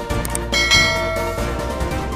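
Background music with a bright bell-like chime sound effect about half a second in, ringing for about a second as the subscribe and notification-bell animation plays.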